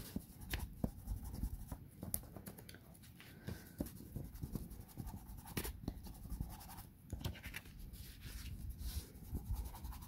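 A small hand tool rubbing and scraping along the edge of a book page, working excess ink into the paper: irregular scratchy strokes with small clicks.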